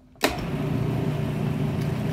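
Countertop blender switched on about a quarter second in, then running steadily as it purées thick hummus made of chickpeas, lemon juice and olive oil.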